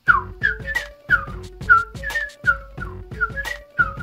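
Whistling in a run of short falling notes, two or three a second, over music with a steady bass beat.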